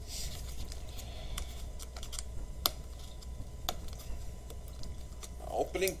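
A small cardboard box being handled and opened by hand: faint scraping and rustling with a few sharp clicks, two of them louder around the middle.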